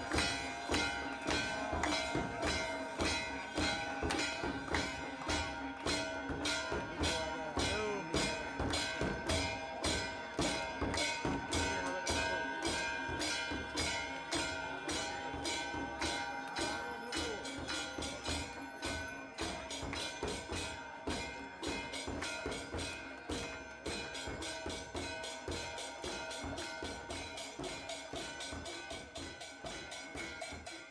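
Aarti music: temple bells ringing steadily over a fast, even percussion beat, fading gradually toward the end.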